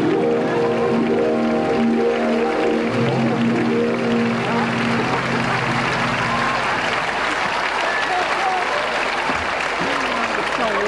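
Studio audience applauding over a music cue for a guest's entrance. The music stops about six and a half seconds in, the applause carries on, and a few voices are heard under it near the end.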